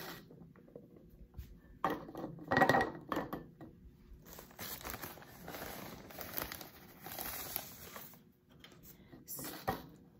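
Powdered milk being scooped from a plastic bag and poured through a plastic funnel into a glass jar: crinkling of the bag and the hiss of dry powder, loudest about two to three seconds in, with a short burst near the end.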